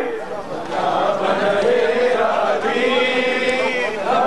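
Voices chanting a noha, a Shia lament for Abbas, in a slow melodic line. A long note is held from about three seconds in.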